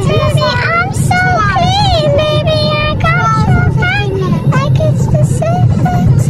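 A voice singing a melody with held notes, one of them wavering quickly about two seconds in, over the steady low rumble of a moving car's cabin.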